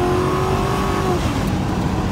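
Car engine and road noise heard from inside the cabin while driving, with a steady engine note that fades out about halfway through.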